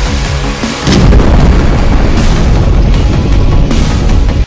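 Dramatic film music, then about a second in a loud, sustained explosion sound effect from an air strike plays over it.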